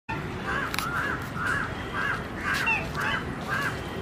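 Black swan calling: a steady series of short calls that rise and fall in pitch, about two a second.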